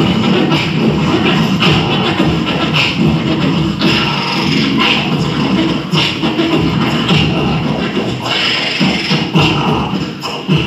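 A group of beatboxers performing together through handheld microphones and a PA, with a continuous low bass line and sharp hits about once a second.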